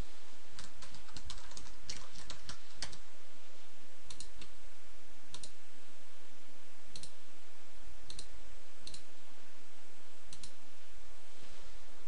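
Computer keyboard typing in a quick run of keystrokes over the first three seconds, then single mouse clicks every second or so, over a steady hiss.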